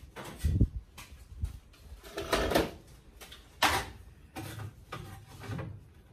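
Rummaging through workshop drawers and tools in search of a hand saw: a drawer sliding and about five separate knocks, clatters and scrapes spread over the few seconds.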